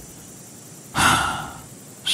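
An audiobook narrator's audible sigh between sentences: one breathy exhale about a second in, starting suddenly and fading out.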